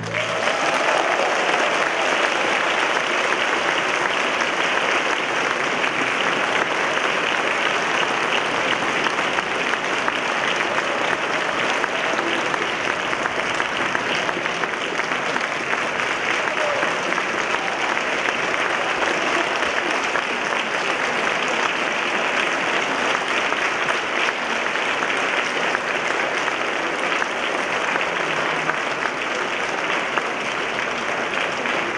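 Concert audience applauding steadily at the end of an orchestral piece with violin soloist, a long unbroken ovation at an even level.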